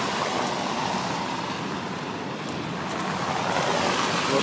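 Steady road traffic noise: an even hiss of passing cars, easing slightly midway and then building again.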